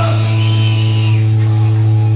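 Live metal band playing: distorted electric guitars hold a steady, sustained low chord, with a higher wavering pitched line over it and no clear drum hits.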